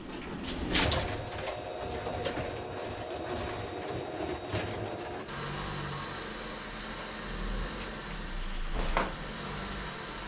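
Electric garage door opener running as the sectional door rolls up, stopping with an abrupt change about five seconds in. Then a low steady hum from the Honda Fit idling at the open doorway, with a couple of short knocks.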